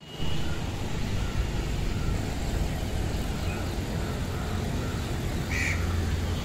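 Steady outdoor ambience with a low rumble, and a short bird call about five and a half seconds in.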